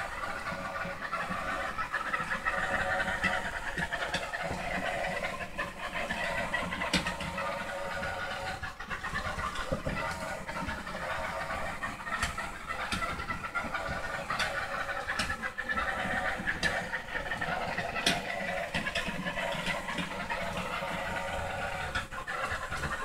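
Small robots' electric gear motors whirring steadily as the robots drive, with a few faint ticks along the way.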